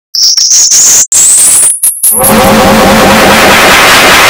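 Heavily distorted, digitally processed audio. A high-pitched whine rises for about a second, cuts out briefly, and then gives way, about halfway through, to loud harsh noise with a pulsing low buzz.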